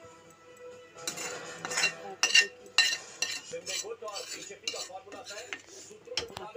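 Metal spatula scraping and clinking against a steel bowl and pan as the cooked fish is dished out. The clinks and scrapes start about a second in, the sharpest come a couple of seconds in, and lighter scraping follows.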